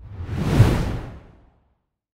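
Whoosh sound effect for a logo reveal: a single swell of rushing noise with a deep rumble underneath. It builds over about half a second and fades away by a second and a half in.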